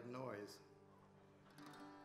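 A short spoken word, then an acoustic guitar ringing faintly for about a second and a half.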